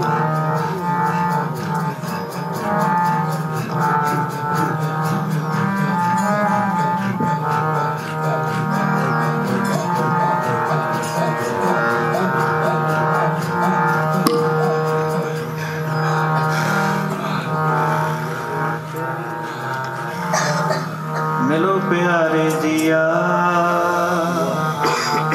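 Sikh kirtan on harmoniums, their reeds holding a steady droning chord and stepping melody, with tabla behind. A voice glides in near the end.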